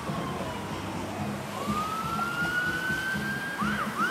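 Emergency vehicle siren wailing: one slow tone falling, then rising again, switching to a quicker yelp near the end.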